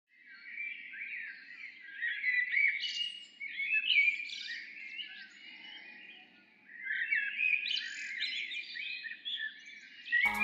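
Birds chirping and singing, many short overlapping calls at once, fading down about halfway through and picking up again.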